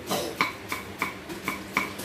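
A kitchen knife chopping green onions on a round wooden chopping board: a steady run of short knocks of the blade on the wood, about three to four a second.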